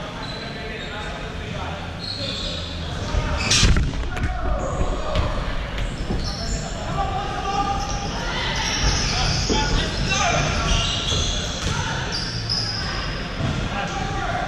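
Futsal game on a wooden hall floor: the ball bouncing and being kicked, with players calling out, all echoing in the large hall. The loudest moment is one hard kick or thud a little under four seconds in.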